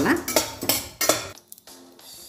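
Steel spatula scraping and clinking against a stainless steel kadai as dry cardamom pods, cloves and seeds are stirred while roasting. There are a few sharp strokes in the first second or so, then it goes quieter.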